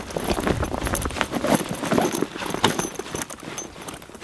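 A backpack being opened and rummaged through: irregular rustling and small clicks of fabric, straps and buckles being handled.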